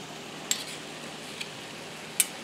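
Utensils knocking against a stainless steel skillet while green beans are stirred, with a sharp click about half a second in and a fainter one later, over a steady low sizzle from the pan.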